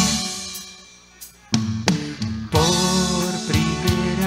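Live band music played instrumentally, with guitar and drum kit. The sound dies away to a brief lull about a second in. The band comes back in with sharp drum hits and then plays on with held notes.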